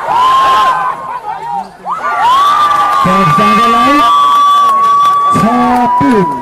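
Volleyball spectators cheering and shouting as a rally ends in a point won. A long held high note rises over the crowd for about three seconds in the middle.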